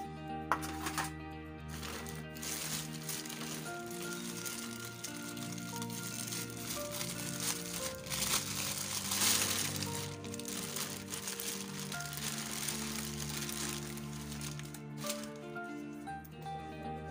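Background music playing throughout, over the crinkling and rustling of a plastic bag and woven plastic sack being opened and handled, the crinkling loudest about halfway through.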